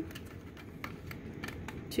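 Paper cup and yarn handled during hand weaving: faint, scattered light ticks and rustles as the yarn is passed over and under the cup's cut strips.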